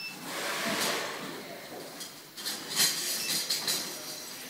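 Indistinct clattering and clinking: a rush of noise in the first second, then a quick run of sharp clinks and clicks in the second half.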